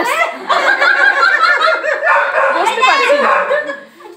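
Several people talking over one another, with laughter mixed in.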